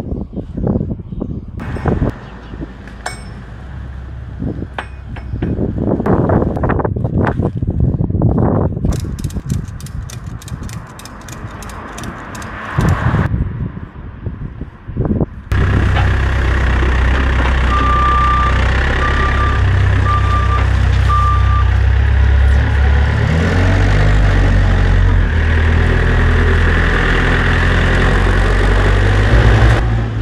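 Clicks, knocks and rattles of a load strap being handled, including a quick run of even clicks. Then a JCB Loadall 520-50 telehandler's diesel engine runs steadily, with four short beeps soon after it comes in and a change in engine note later as it works.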